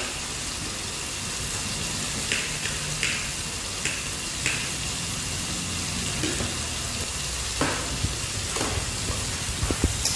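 Steady sizzling hiss of cooking on the heat, with a few light clicks of a knife scraping chopped garlic and onion on a ceramic plate.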